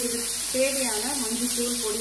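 Chopped onions, tomatoes and green chillies sizzling in oil in a frying pan as a spatula stirs them, with a steady hiss under a person talking.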